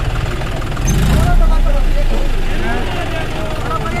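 John Deere 5105 tractor's three-cylinder diesel engine running with its wheels in deep sand, rising briefly about a second in, with crowd voices over it.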